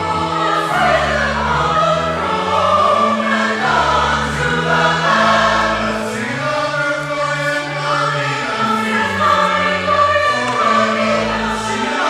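A mixed choir of men and women singing in parts, over long-held low notes from an accompanying instrument.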